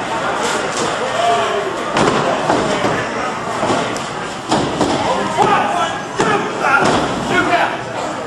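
Ringside crowd shouting and calling out over a wrestling match, with several sharp thuds of bodies and boots hitting the ring canvas.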